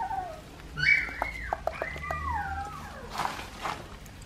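A 2½-week-old Australian Shepherd puppy crying in high-pitched whines: a short falling cry at the start, a loud cry about a second in (the loudest), then a long cry that slides down in pitch around two seconds in.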